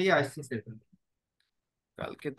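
Speech: a voice talking for about the first second, then cut off to dead silence.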